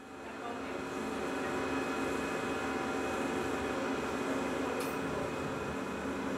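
Steady hum of laboratory equipment running, several constant tones over an even hiss, fading in over the first second.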